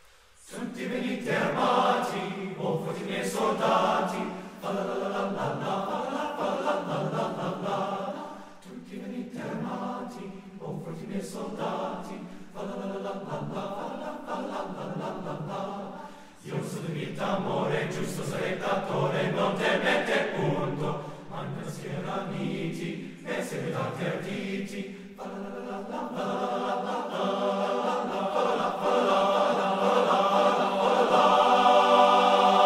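Men's choir singing in harmony, all coming in together about half a second in, in phrases with brief breaks between them and growing louder toward the end.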